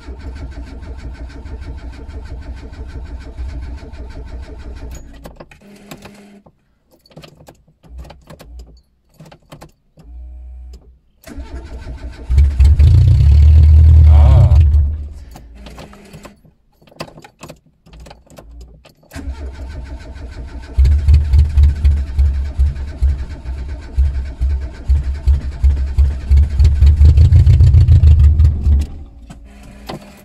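Old Renault 5 Campus four-cylinder petrol engine being started after standing: a steadier stretch at first, then one short loud burst of firing about halfway through, then a longer loud, uneven run in the last third as it catches on stale fuel. It sounds very loud because its exhaust is off the car.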